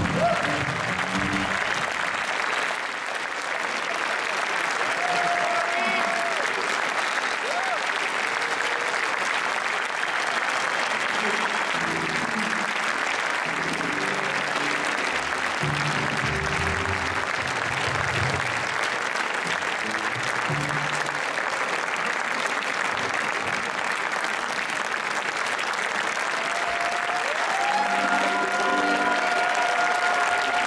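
An audience applauding: dense, steady clapping that holds for the whole stretch.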